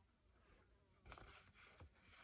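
Near silence, then a faint, brief rustle of a card-stock sheet being handled about halfway through, with a small click near the end.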